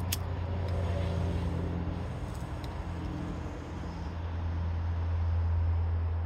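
A lighter clicks once at the start as a small metal smoking pipe is lit, over a steady low rumble that swells again after about four seconds.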